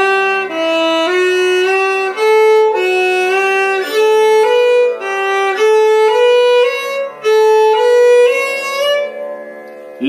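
Solo violin playing a four-note alankar exercise: groups of four ascending notes, Sa Re Ga Ma and onward, each group slurred in a single bow stroke, with the groups climbing step by step up the scale. The playing stops about a second before the end.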